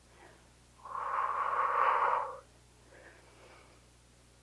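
A person exhaling hard through the mouth, one long breathy rush lasting about a second and a half, as she works through a weighted lunge.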